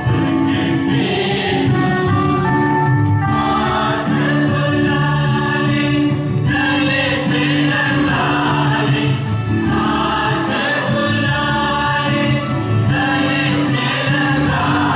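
Choir singing a sung part of the Mass, with long held notes, following the penitential rite.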